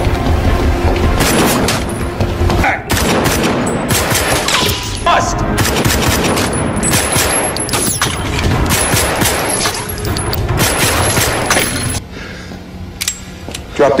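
Heavy gunfire in a concrete parking garage: rapid, overlapping shots from several guns. The firing drops away about twelve seconds in.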